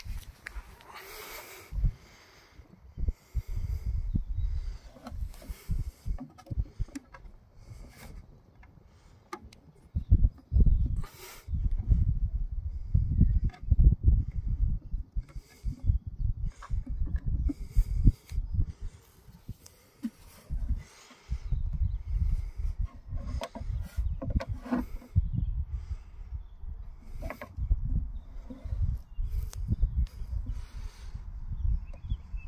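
Wind buffeting the microphone in irregular gusts of low rumble, with short lulls, and a few light handling clicks.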